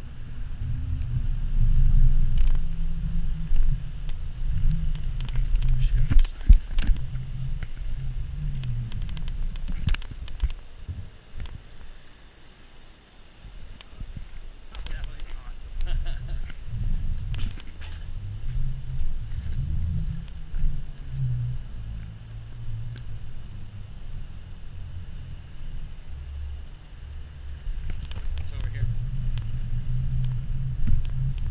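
Wind buffeting an action camera's microphone as a mountain bike rolls down a paved street, with scattered rattles and knocks from the bike over bumps. The rumble eases to a lull about twelve seconds in, then picks up again.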